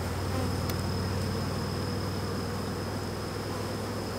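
Many honeybees buzzing steadily around an open hive.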